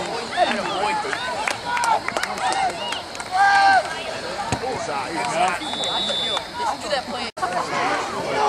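Sideline spectators' overlapping voices and shouts during a football play, with one loud held shout a few seconds in and a short high whistle blast about six seconds in. The sound cuts out for an instant near the end.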